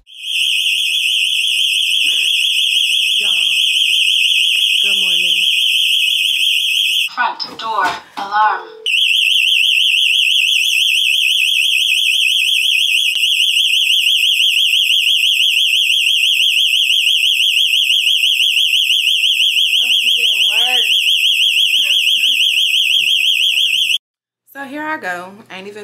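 ADT home security system's alarm siren sounding a loud, high-pitched warbling tone. It cuts out for about two seconds around a third of the way through, while voices are heard, then starts again.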